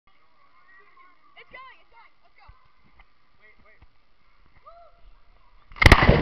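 Faint distant voices, then near the end a sudden loud splash as a person jumps into water with the camera, turning into a churning underwater rush.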